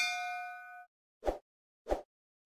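A bell-like ding sound effect as the notification bell icon is clicked, several tones ringing together and dying away in under a second. Two short, soft pops follow, a little over a second in and again near the end.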